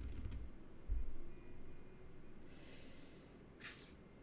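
A person's short, sharp sniff near the end, after two dull low thumps in the first second or so.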